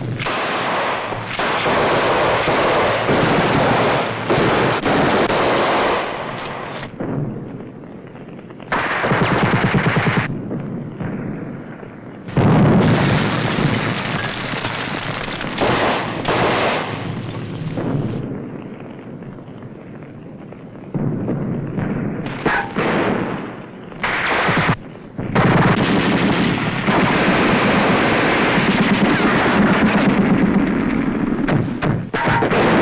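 Battle gunfire on an old film soundtrack: long bursts of rapid machine-gun fire mixed with rifle shots. It comes in several stretches of a few seconds each, with quieter gaps between.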